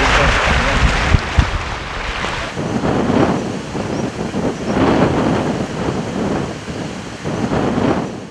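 Lake water lapping and splashing against a stone shoreline wall in irregular surges. Wind buffets the microphone with a low rumble in the first couple of seconds.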